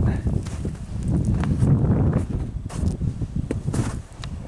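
Footsteps of someone walking, over an uneven low rumble on the microphone, with scattered short clicks.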